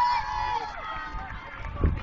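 Spectators' voices mixed with the footfalls of a pack of cross-country runners running past on a dirt course. There is a brief low thump near the end.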